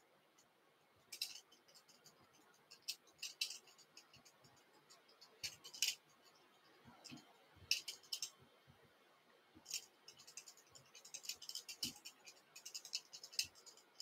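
Faint, irregular scratchy rustles of fingers handling and smoothing fly-tying floss close to the microphone, short scratches coming every second or so and more often near the end.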